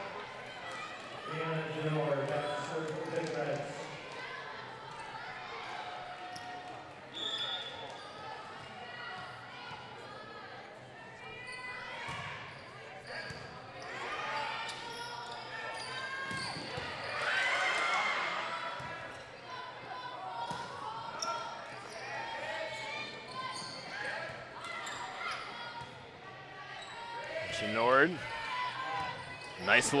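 A volleyball rally in a gymnasium: sharp hits on the ball in play, with players' calls and spectators' voices echoing in the hall, loudest near the end.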